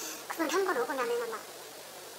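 A woman speaking Korean for about a second and a half, then a quiet pause.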